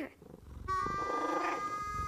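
A cat purring, joined about two-thirds of a second in by a few sustained music notes.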